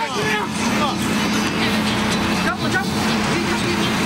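Outdoor soccer match sound: scattered voices of players and spectators calling out over a steady engine hum, which stops abruptly just as the picture cuts away.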